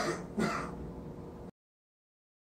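A man clearing his throat twice, two short rasping bursts about half a second apart, and then the sound cuts off abruptly about one and a half seconds in.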